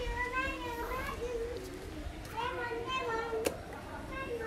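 Distant children's voices: two drawn-out, high-pitched calls about a second long each, with a single sharp click about three and a half seconds in. The scooter's engine is not running.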